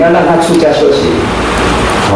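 A man speaking Mandarin Chinese in a lecture, through microphones.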